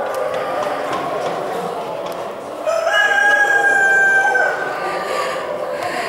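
A rooster crows once, a single long held call lasting nearly two seconds, starting a little before the middle. It sounds over a steady hubbub of a busy show hall.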